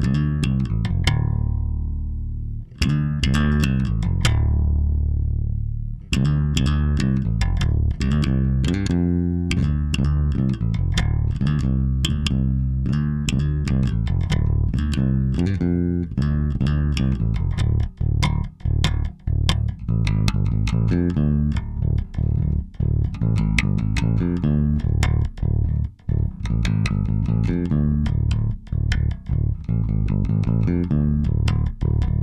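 Dahrendorf Daikatana multiscale five-string electric bass, with a sapele and pao ferro body and neodymium pickups, played fingerstyle and amplified. A few held notes with short breaks come first, then from about six seconds in a fast, continuous run of plucked notes.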